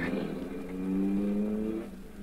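Radio-drama sound effect of a car engine pulling away, its pitch rising slowly as it accelerates, then fading out near the end.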